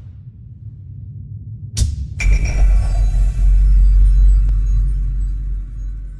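Logo sting sound effect: a low rumble builds, a sharp whoosh comes about two seconds in, and then a deep boom hits with ringing tones that slowly fade.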